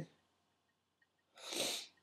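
Near silence, then about a second and a half in a man's short sniff, a quick breath in through the nose lasting about half a second.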